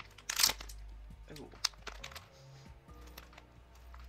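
A plastic snack packet torn open with one sharp rip about half a second in, followed by faint crinkling of the wrapper as it is handled.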